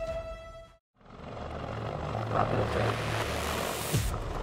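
A held musical note fades out and there is a short gap of silence. Then a Lockheed AH-56 Cheyenne helicopter is heard flying low: a steady low rotor hum under a rush of noise that grows louder towards the end.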